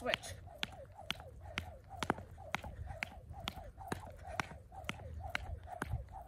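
Jump rope turning and slapping the exercise mat about twice a second during one-footed hops, in an even rhythm.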